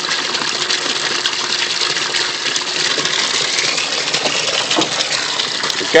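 Water from an aquaponics bell siphon pours in a thick, steady stream into a plastic barrel fish tank, splashing into the water's surface. The gush is the siphon having kicked in and draining the grow bed above at full flow.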